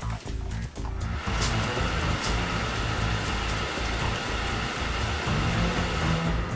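Background music, with a steady hiss of steam from a steam iron starting about a second in and stopping shortly before the end.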